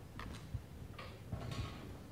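Several faint, irregular clicks and light taps, with one soft low knock about half a second in.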